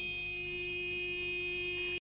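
Crashed car's horn stuck on, sounding one steady, unbroken tone.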